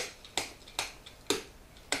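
Marker pen writing on a whiteboard: a run of short, sharp strokes, about two a second, as the letters are drawn.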